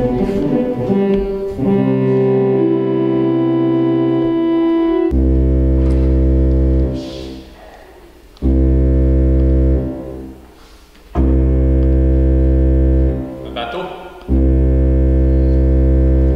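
Church organ playing loud held chords with a big, deep bass: a few shorter notes, then a long sustained chord, then four low chords of about two seconds each with short pauses between.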